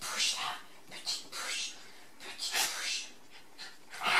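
A dog sniffing and snuffling in about four short bursts as it noses into another dog's fur.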